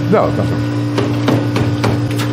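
Emery Thompson 12-quart batch freezer running with a steady hum, with a few sharp knocks of things being handled on the table in the second half.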